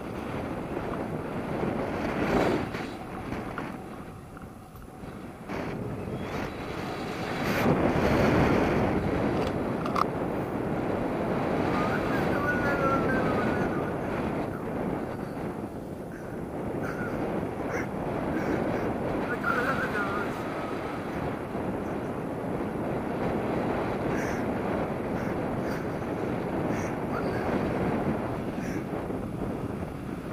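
Wind rushing over the microphone from the airflow of a paraglider in flight, a steady buffeting rush that swells about seven to nine seconds in.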